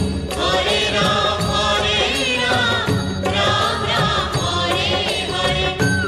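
Bengali film song playing: a chant-like vocal melody over a steady rhythmic accompaniment.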